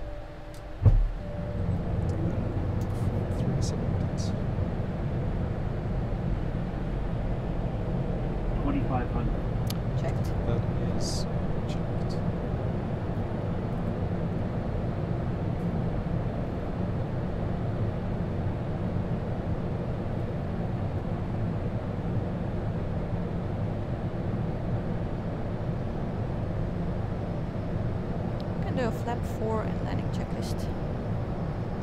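Airbus A220 landing gear extending: a sharp thump about a second in as the gear drops, then a steady low rumble that stays louder than before with the gear lowered, heard from inside the cockpit.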